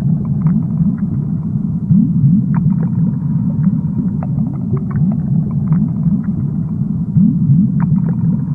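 Muffled underwater ambience: a steady low rumble packed with short rising gurgles, with faint scattered ticks.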